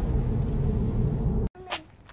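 Steady low road and tyre rumble inside the cabin of a moving Chevrolet Bolt EV. It cuts off abruptly about one and a half seconds in, followed by a much quieter stretch with one brief high squeak.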